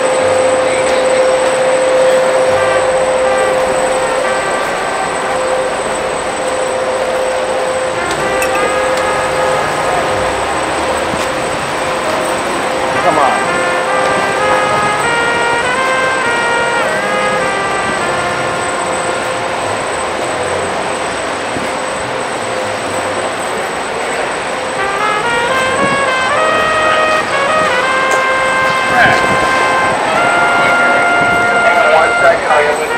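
City street noise with traffic and voices, under music whose held notes step up and down in short runs over a long steady tone.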